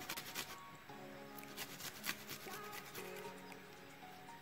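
Soft background music with slow sustained notes, over the faint scraping of garlic cloves rubbed on a small handheld grater, the scrapes clustered near the start.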